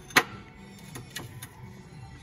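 Handling of a glazed ceramic plant pot on a glass shelf: one sharp clink a moment in, then a few lighter clicks and rustles as a paper price tag is fished out of the pot.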